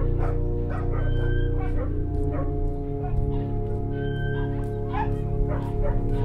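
Held chords on an old pampa piano, the notes sustained for seconds with a change of chord about halfway, while dogs bark.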